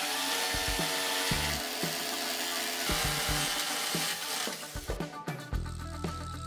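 Electric jigsaw cutting through a wooden board, a loud steady buzz that stops about four and a half seconds in. Background music plays underneath and carries on alone after the saw stops.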